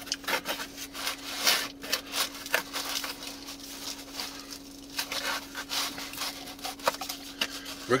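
A person chewing a mouthful of wood-fired bread and meatball sandwich close to the microphone, with irregular crackly rustles, over a faint steady hum.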